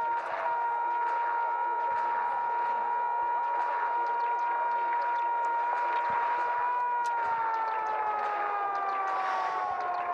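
A steady, siren-like pitched tone with overtones over a noisy trackside background, sliding down in pitch over the last few seconds.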